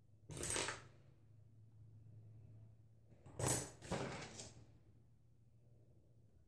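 Three short clattering rustles, one near the start and two close together a little past halfway, as jumbo perm rods are handled and picked out.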